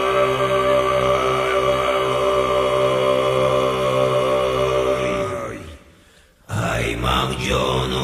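Low, droning Buddhist mantra chant with strong overtones, held on a steady pitch. About five and a half seconds in the tone slides down and fades to a brief near silence, and the chant starts again abruptly about a second later.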